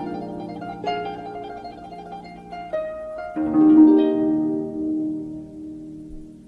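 Background music played on a solo harp: plucked notes and chords that ring and fade, with new notes struck about a second in and again around three seconds in, dying away near the end.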